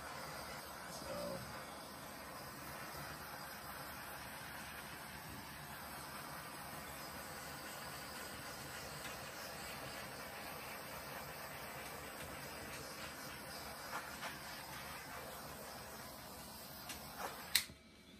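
Handheld torch flame hissing steadily as it is passed over wet acrylic paint to pop air bubbles in the pour. The hiss ends with a click near the end.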